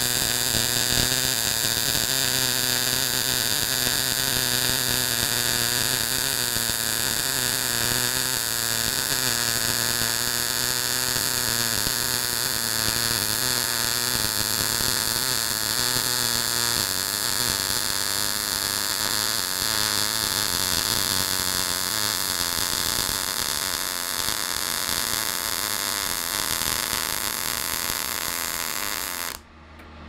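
Semi-automatic MIG welding arc from a DECAPOWER XTRAMIG 200SYN in synergic mode at 120 A and 17.5 V, laying a bead on 2 mm-wall square steel tube. The arc runs steadily and stops abruptly near the end. The welder judged the wire feed at this setting too slow, so he had to dwell long in one spot.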